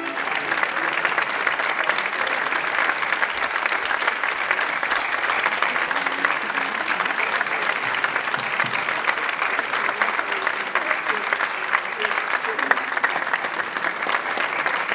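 Concert audience applauding steadily, a dense even clapping that begins as the string quartet's music ends.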